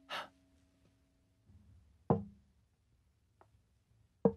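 A short breathy rush of air at the start, then a single sharp knock with a brief hollow ring about two seconds in, and a faint click near the end.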